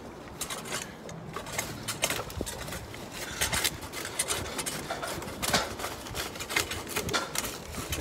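Thick, dry ivy matting rustling and crackling as it is handled and peeled off a roof, with many quick, irregular crackles.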